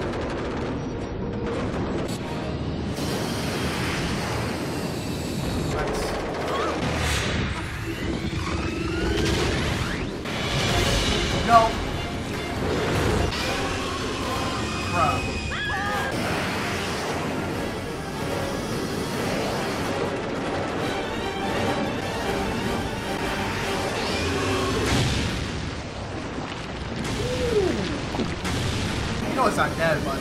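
Action-cartoon soundtrack: dramatic music mixed with booms and crashes, with one sharp loud hit about eleven and a half seconds in.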